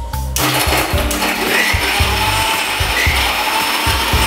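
Electric mixer grinder switched on about a third of a second in and running steadily, its stainless steel jar grinding ice cubes, diced watermelon, strawberry syrup and lemon juice into a drink.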